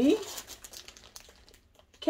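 Clear plastic wrapping crinkling as a purse sealed in it is handled and lifted, after the tail of a spoken word at the start; the crinkling fades away over about a second and a half.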